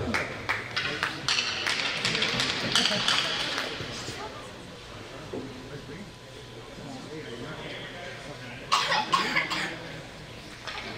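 Crowd in an ice rink chattering, with scattered sharp taps and claps through the first few seconds and a cough. The murmur then settles, and a brief louder burst of voices comes near the end.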